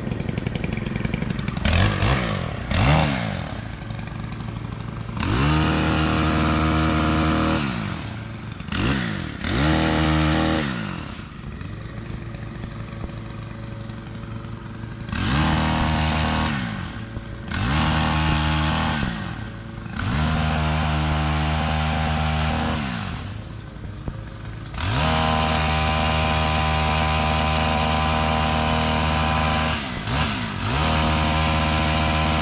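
Small two-stroke engine of a long-shafted handheld power tool idling, then revved to full throttle in about six bursts of a few seconds each, dropping back to idle between them. The longest burst comes near the end.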